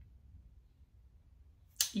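Near silence: quiet room tone, ended near the end by a short sharp breath or mouth sound as a woman's speech begins.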